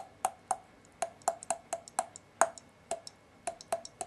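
A run of irregular sharp clicks, roughly four a second, some louder than others, each with a short hollow ring.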